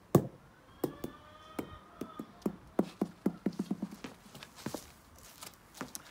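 A solid rubber fake egg dropped onto stone paving slabs and bouncing: one loud first hit, then a run of bounces coming quicker and quicker as it settles, and a few scattered taps after.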